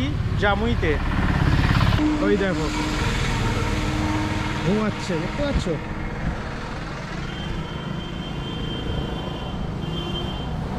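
Roadside traffic noise: a vehicle rumbling past in the first two seconds, then steadier road noise with a drone for a few seconds and a thin high tone near the end, broken by a few short spoken words.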